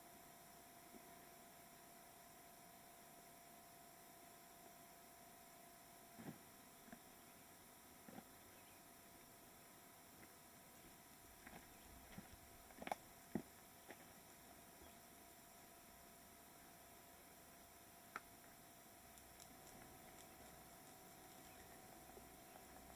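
Near silence: a steady faint hiss with a low hum, broken by a few faint scattered clicks, the two loudest about half a second apart near the middle.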